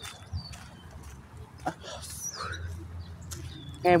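Faint bird chirps: a few short, high whistled notes, one gliding down in pitch about two seconds in, over a steady low outdoor rumble.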